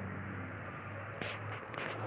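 Quiet garage room tone with a steady low hum, and a couple of faint brief rustles a little past a second in.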